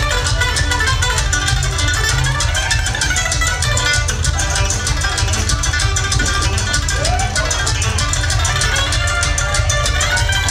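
Live bluegrass band playing a fast tune, with banjo and mandolin picking rapidly over a loud, steady bass line from a one-string gas-tank bass.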